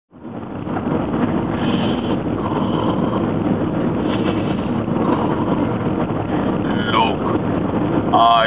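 Steady vehicle noise, with a few faint voices over it.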